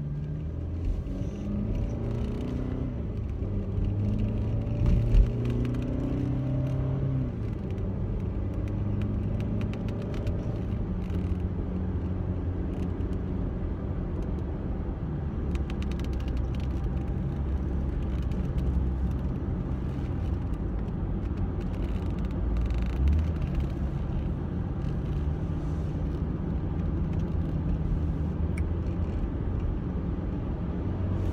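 Car engine and road rumble heard from inside the cabin while driving. The engine note rises for several seconds early on as the car speeds up, then settles into a steady drone.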